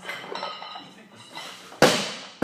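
A loaded Olympic barbell with bumper plates clinking and rattling on its sleeves as it is held overhead. Near the end it is dropped onto the rubber floor with one loud crash that then fades.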